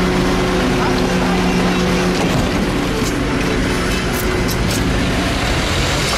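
Truck engine idling, a steady low hum; its strongest tone drops away about two seconds in while the rest of the hum carries on.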